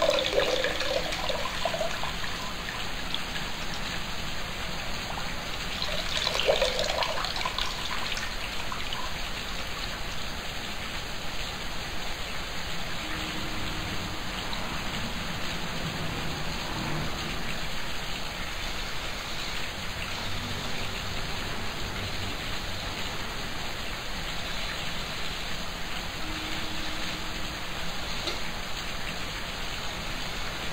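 Water pouring and splashing into a plastic bucket, once at the start and again about six seconds in, over a steady hiss.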